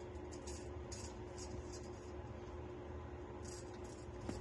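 Naked Armor Erec straight razor cutting through coarse stubble around the mustache in short strokes: a series of brief high scrapes, several in the first two seconds and more about three and a half seconds in.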